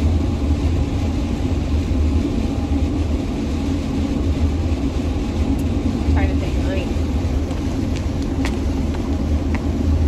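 Steady low engine and tyre rumble inside a van's cabin at highway speed, with a brief vocal sound about six seconds in.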